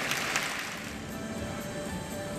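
Audience applause dying away over the first second, then soft background music with a few held notes.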